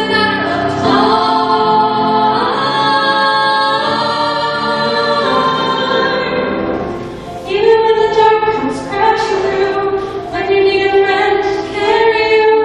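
Two female vocalists singing a duet into microphones, holding long sustained notes, with a brief lull about seven seconds in before they sing on.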